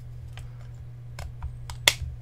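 Magnetic battery cover being fitted onto a Smok Guardian III pipe-style vape mod: a few light plastic clicks while it is lined up, then one sharp click near the end as the magnets pull it shut.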